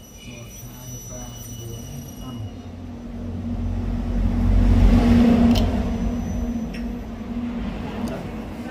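Low rumble of a passing motor vehicle, swelling to its loudest about five seconds in and then fading.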